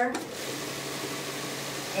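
A Cabela's vibratory case tumbler loaded with corncob media is switched on and runs with a steady low hum under the hiss of the churning media.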